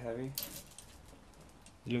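Steel lifting chain jingling briefly about half a second in as it is handled, followed by a few lighter metal clinks.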